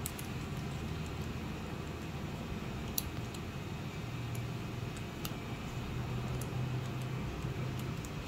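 A few faint clicks and small knocks of 3D-printed plastic steering parts being handled and moved, over a steady low hum.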